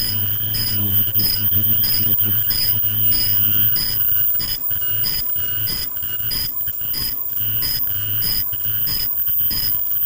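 KF94 mask-making machine running, with a short high-pitched tone repeating evenly about twice a second over a steady hum and a steady higher whine.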